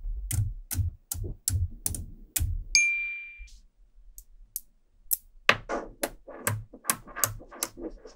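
Magnetic metal balls snapping onto a magnet build, about three sharp clicks a second, then a single ringing ding about three seconds in. Later comes a quicker, denser run of clicks as balls are snapped together by hand.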